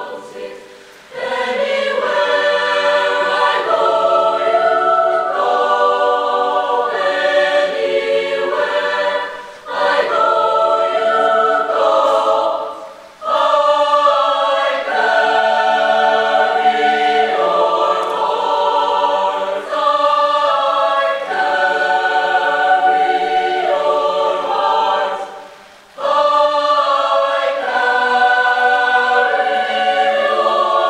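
Mixed chamber choir singing in close harmony, holding sustained chords in long phrases. The sound drops briefly between phrases four times.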